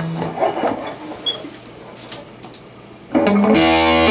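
Electric guitar: a low held note fades out, followed by a few quiet notes and handling sounds. About three seconds in, a loud chord is struck and left to ring.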